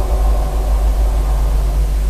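A steady low rumble with a faint hiss over it.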